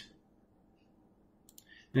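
Near-silent room tone, then a couple of short faint clicks about a second and a half in, just before a man's voice resumes.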